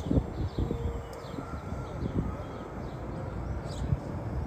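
Wind rumbling and buffeting on the microphone, with a few short bird chirps near the start and again near the end.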